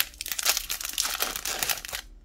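The foil wrapper of a Magic: The Gathering collector booster pack being torn open and crinkled in the hands: a continuous crackling rustle of thin plastic foil.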